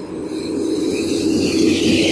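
Steady rushing road noise while riding an electric fat-tire bike along a sidewalk beside traffic. It swells about a second and a half in.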